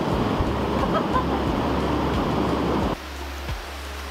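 Rushing water of a jungle stream and small waterfall, a steady hiss with a low rumble under it. About three seconds in the sound drops suddenly to a quieter level, leaving the low rumble and a few soft thumps.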